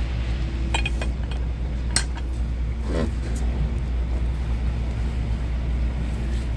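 Pressed red grape juice trickling in a thin stream from a manual basket wine press's spout into an enamel mug, over a steady low rumble. Two sharp clicks come about one and two seconds in.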